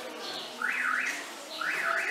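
A small bird calling: a quick rising-and-falling chirp, given twice about a second apart.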